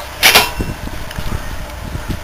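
A worn steering ball joint from a cheap Chinese mini quad bike shaken by hand, giving a string of irregular soft knocks as the loose joint moves in its play, after a short sharp noise about a quarter of a second in.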